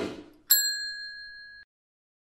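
A brief swoosh, then about half a second in a single bright bell ding that rings for about a second and cuts off suddenly. It is the notification-bell sound effect of a subscribe end-screen animation.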